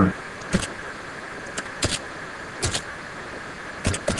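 Computer keyboard keystrokes: a handful of short, sharp clicks at irregular intervals, with two close together near the end, over a steady background hiss.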